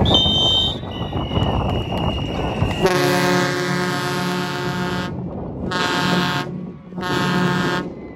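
An air horn sounds three times: one long blast of about two seconds, then two shorter ones, marking a touchdown. Before it, high steady whistles ring out over the noise of a stadium crowd.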